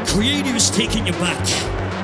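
Hardstyle electronic dance music from a live DJ set, with a pulsing low beat. A pitch-bending, voice-like effect slides up and down in the first second and a half.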